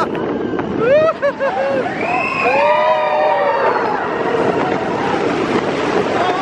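Riders on the Expedition Everest roller coaster screaming: several rising and arching cries over the steady rush of wind and the train running on its track.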